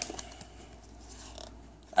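Faint rustle of trading cards and a torn foil booster-pack wrapper being handled.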